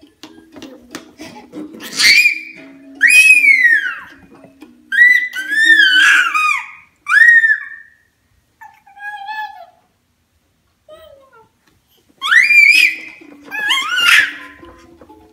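A baby squealing in loud, high-pitched shrieks, several times with short pauses, over the simple electronic tune of a Fisher-Price Bounce, Stride & Ride Elephant ride-on toy. The tune drops out about halfway through and comes back near the end.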